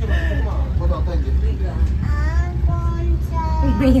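A small child's voice, with held and sliding notes, and a woman laughing near the end, over the steady low rumble of a moving cable car cabin.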